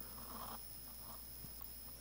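Near silence between words: a faint steady hiss with a thin high-pitched whine from the recording.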